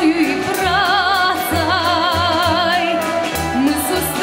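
A woman singing a Belarusian folk song with a wide, regular vibrato, over instrumental accompaniment with a moving bass line.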